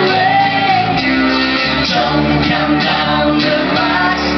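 A live folk band playing a traditional song on electric bass and acoustic guitar, with voices singing loudly, some of it close to shouting, in a reverberant hall.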